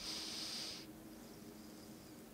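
A short, faint hiss lasting under a second, then quiet room tone with a faint steady hum.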